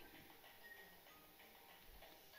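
Near silence: faint room tone with a few brief, faint high tones.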